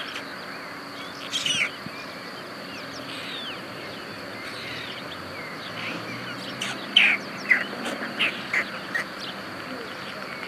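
Birds chirping: short, falling chirps, a few about a second and a half in and a quick run of louder ones near the end, over a steady faint high whine.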